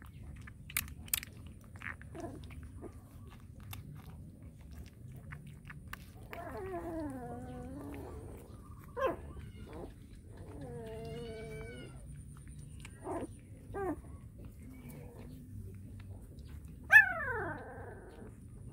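Newborn puppies whining and crying in a series of drawn-out, wavering calls, ending with a sharp, loud falling yelp near the end, while one is bottle-fed. A few light clicks come in the first couple of seconds.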